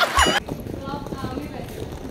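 Laughter from a TV comedy clip with a short high-pitched sound effect, cut off abruptly about half a second in; after it, quieter background with a faint voice.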